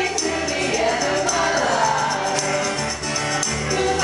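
A pop band playing a song live, a male lead vocalist singing over the accompaniment through the PA, with a steady high ticking percussion in the mix.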